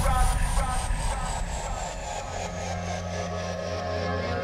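Frenchcore DJ mix going into a breakdown: a high sweep slides steadily downward while the heavy low bass drops out about halfway through and the music gets quieter, leaving steady low held tones.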